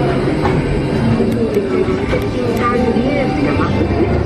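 Steady low rumble of Spaceship Earth's Omnimover ride vehicles running along their track, under the attraction's soundtrack of music and voices with sliding pitch.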